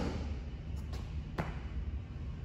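Sneakers stepping on a rubber gym floor as a man brings his feet back together out of a dumbbell split jerk: three light taps about a second in, over a low steady hum.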